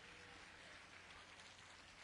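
Near silence: only a faint, even hiss of distant crowd applause at the end of a speech.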